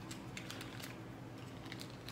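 Faint, scattered small clicks and taps of a plastic dipping-sauce cup being picked up and handled.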